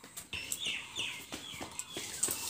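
A bird calling in a run of short, falling chirps, with sharp clicks and knocks among them.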